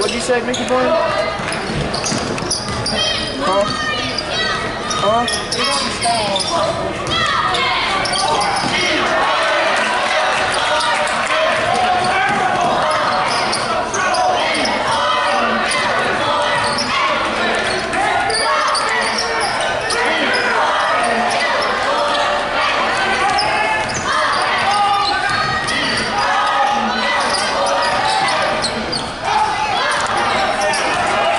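A basketball being dribbled on a hardwood gym floor during live play, with voices calling out and chatter filling the large gymnasium.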